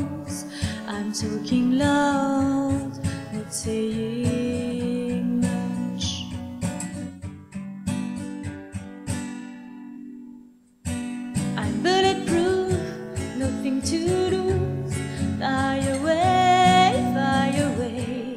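Strummed acoustic guitar with a woman singing over it. About halfway through the music fades almost to silence, then comes back suddenly a second or so later.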